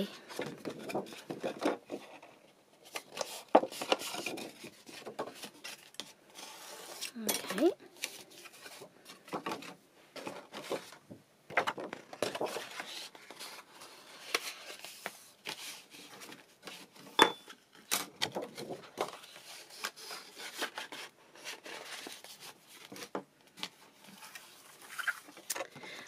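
Sheets of patterned paper being handled, slid and folded on a craft mat, with a bone folder rubbing gently along the score lines near the start. Scattered sharp taps and clicks.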